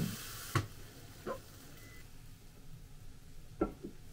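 Octopus fried rice sizzling in a frying pan, stopping abruptly about half a second in. A few faint light knocks follow against quiet room tone.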